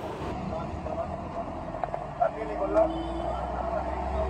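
Steady rumble of a road vehicle's ride and street traffic heard from inside the vehicle, the low rumble growing stronger about halfway through.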